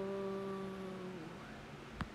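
A person's voice holding one flat, steady note, the drawn-out end of the word "Blower", which stops a little over a second in with a slight drop in pitch.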